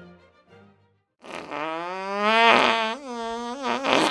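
Closing music fades out. About a second in, a long, loud comic sound effect starts: a held tone that rises slightly and then wobbles in pitch, breaking briefly once.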